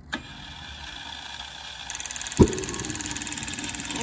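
Model jet turbine being spun up by its starter for a gas start: a steady whirr that grows louder, with a high whine joining about halfway through. A single sharp pop, the loudest sound, comes near the middle. The start-gas bottle is nearly empty, so the start is weak.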